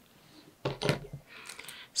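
Faint clicks and soft rustling of hands handling yarn and small tools while finishing off a crocheted square's yarn end.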